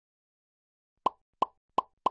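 Logo-animation sound effect: three short, evenly spaced pops about a third of a second apart, starting about a second in after silence.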